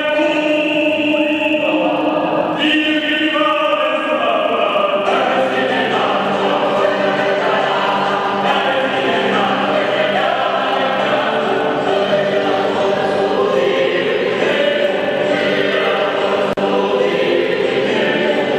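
A small mixed vocal ensemble sings an early Spanish baroque-era song. Only a few voices sing at first; more come in about two and a half seconds in, and the full choir sings from about five seconds in.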